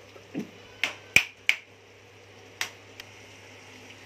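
A metal spoon clinking against a kadhai while stirring, about six short sharp knocks spread over the first three seconds, the loudest about a second in.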